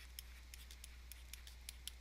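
Faint, irregular light ticks of a stylus tapping and dragging across a pen tablet as words are handwritten, over a steady low electrical hum.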